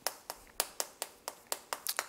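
Chalk tapping against a chalkboard as a word is written in quick strokes: a run of sharp clicks, about four a second.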